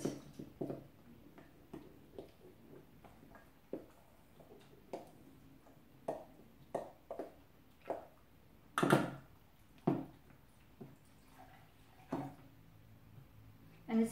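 Spoons stirring batter in mixing bowls: scattered scrapes and clinks of a spoon against a stainless steel bowl, with wet stirring as liquid is poured a little at a time into a chocolate mixture. The loudest scrape comes about nine seconds in.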